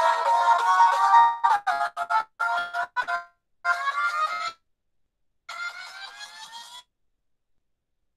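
Background music with electronic tones, breaking into short phrases with rising glides and brief silences in between.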